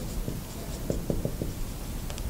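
Dry-erase marker writing on a whiteboard: a run of short, irregular strokes.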